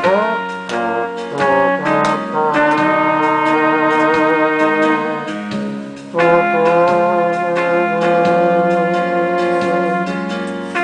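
Harmonica playing a slow melody of long held, wavering notes over a recorded backing track.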